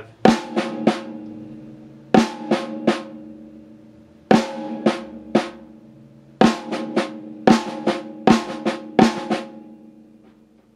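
Snare drum played slowly in groups of three strokes: an accented right-hand hit followed by two softer left-hand strokes, the opening of a six-stroke roll. The drum rings on between groups, and in the second half the strokes come closer together.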